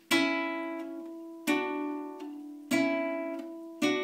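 Nylon-string classical guitar, four chords each strummed once and left to ring out, alternating between A and D about every second and a quarter.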